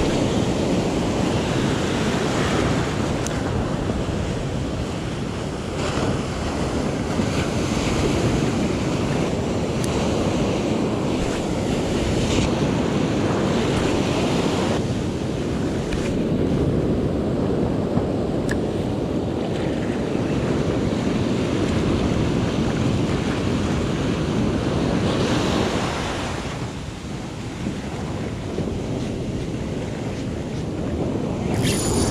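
Ocean surf breaking and washing through the shallows around the listener, a steady rushing noise that eases slightly near the end.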